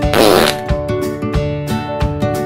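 A short fart sound, about half a second long, near the start, over background music with a steady beat.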